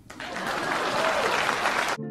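Audience applauding, building up over the first half second and cutting off suddenly at the end.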